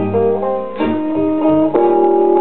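Blues guitar played on a vinyl record, picking single notes and chords in a gap between sung lines, with fresh notes struck about a second in and again near the end. The sound is dull, with no high treble.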